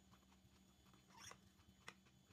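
Near silence with faint mouth sounds of someone tasting a spoonful of cold soup about a second in, then a single light clink of a metal spoon against a glass bowl near the end.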